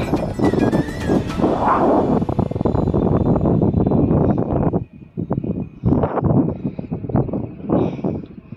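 Wind buffeting the microphone, a dense rumbling rush for about five seconds that then drops away and comes back in short, uneven gusts.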